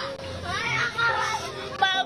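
Voices of people at the scene calling out, with no clear words, over a background music track with held notes.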